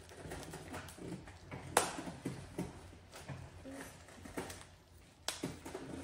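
Handling of a small plastic object: scattered light clicks and rustles, with a sharp click about two seconds in and another a little past five seconds.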